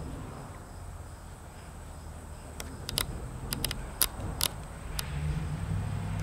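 Quiet background with a low hum, and a quick run of about half a dozen sharp clicks or taps a little past halfway through.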